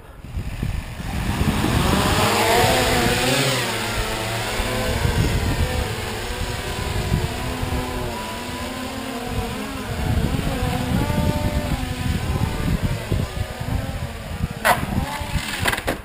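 Electric quadcopter's motors and propellers whirring inside a foam ducted shroud, the pitch rising and falling constantly as the craft is pushed about by wind, with wind rumbling on the microphone. A sharp knock near the end.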